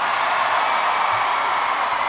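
A large crowd cheering and applauding.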